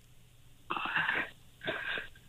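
A woman caller's breathing heard through a narrow telephone line: two breaths, the first about two-thirds of a second long, the second shorter near the end.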